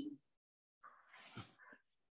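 Near silence, with a few faint, short scuffs of a duster wiping a whiteboard near the middle.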